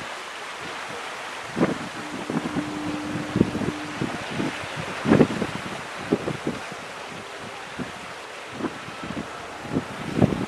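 Wind buffeting the microphone in irregular gusts, over a steady hiss of wind.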